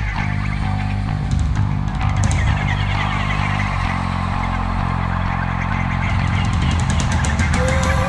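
Alternative rock band playing live: electric guitars over a drum kit, with sustained low notes that shift pitch every second or so and cymbals struck toward the end.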